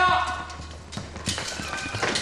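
Several people running in boots over wooden floorboards: a quick, irregular patter of footfalls. A man's shout at the start is the loudest sound.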